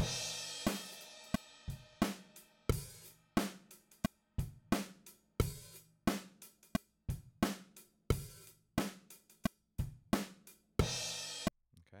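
Playback of a multitrack recorded acoustic drum kit: kick, snare and hi-hat in a steady groove, with a cymbal crash at the start and another near the end. The hits have been edited to the grid with Beat Detective's edit smoothing and crossfades, and they play back tight and without jitter. Playback cuts off suddenly just before the end.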